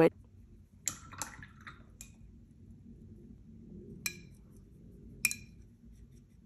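Watercolour brush mixing paint in a ceramic palette well: soft brushing in the wet paint and a few light, ringing clinks of the brush against the porcelain, the loudest about five seconds in.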